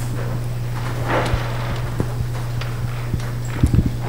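Steady low mains hum from the hall's sound system, with faint rustling and a few soft knocks from a microphone being handled, the knocks grouped near the end.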